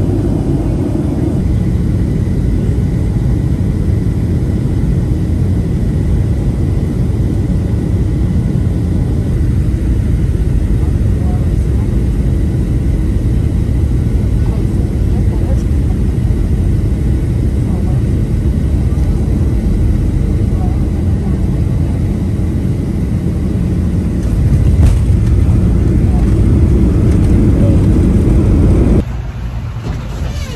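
Jet airliner engine noise heard inside the cabin from a window seat beside the engine: a loud, steady low rumble through the final approach and the roll along the runway, growing louder for a few seconds near the end. It then cuts off abruptly to a quieter background with a voice.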